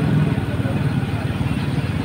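Motorcycle engine running steadily while riding, with a low even pulsing note.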